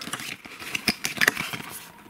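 Paper cassette J-card being handled and unfolded by hand over a plastic cassette case: a run of small irregular crackles, scrapes and clicks.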